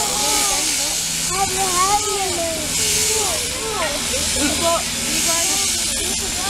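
Mechanical sheep-shearing handpiece running as the fleece is cut off, a steady high hiss over a faint low hum.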